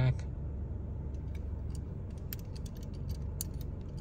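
Steady low rumble of a car's cabin, with faint scattered clicks in the middle as a small die-cast metal model car is turned over in the hand.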